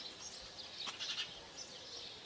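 Faint outdoor ambience of small birds chirping, irregular and high-pitched, with a single light click near the middle.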